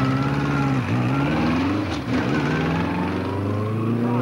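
Motorcycle engine pulling away under load, its pitch climbing and dropping back twice at gear changes before settling into a steady run.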